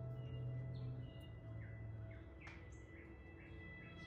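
Quiet background music with a low steady drone in the first half. From about a second and a half in there is a string of short, high bird chirps.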